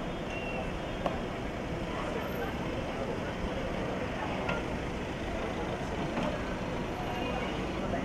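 Steady low rumble of a car engine running close by, with faint, indistinct voices over it.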